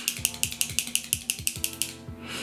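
A SeneGence LipSense liquid lipstick tube being shaken hard by hand, rattling in a quick, even run of about seven clicks a second that stops near the end. Background music plays underneath.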